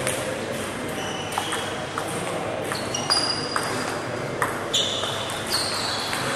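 Table tennis rally: the ball clicking sharply off the bats and the table, roughly a stroke every half second or so, starting about a second in.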